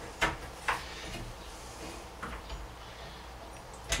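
Tools handled against a wooden frame: two sharp clicks about half a second apart near the start, then a softer click about halfway through, over a steady low hum.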